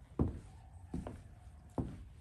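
A person's footsteps on wooden deck boards: three heavy steps, a little under a second apart.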